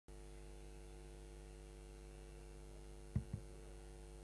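Faint steady electrical mains hum, with two short low thumps in quick succession a little past three seconds in.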